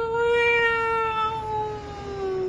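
A cat's long, drawn-out yowl held on one steady note and sinking slowly in pitch, a caterwaul between two cats facing off close together.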